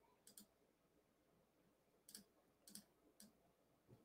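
Near silence broken by a few faint, sharp clicks of a computer mouse, one soon after the start and three more spread through the second half.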